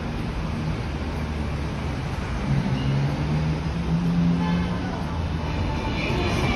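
Outdoor city ambience: a steady rush of wind and distant traffic, with faint voices and a low hum that swells for a couple of seconds midway.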